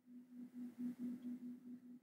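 A faint, steady low hum on one pitch, wavering slightly, with otherwise near silence.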